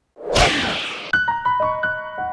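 An outro jingle: a loud whoosh sound effect, then from about a second in a quick run of ringing keyboard notes, about six struck one after another and left to sustain together.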